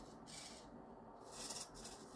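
Small servo motors driving an animatronic skeleton raven's beak and head: a faint background, then a brief high-pitched whir with small ticks near the end.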